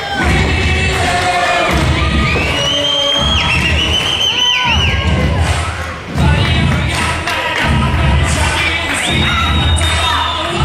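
Music with a heavy, steady beat playing over a cheering crowd, with high shouts from children among it.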